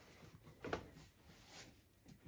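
Quiet room with one brief, faint knock a little under a second in.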